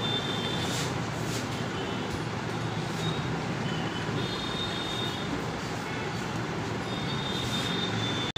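Steady background noise, with a few faint short wiping strokes as a whiteboard is erased.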